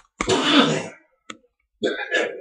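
A person's voice: a loud, breathy, cough-like burst lasting under a second. A single sharp click follows, and a second short vocal sound starts near the end.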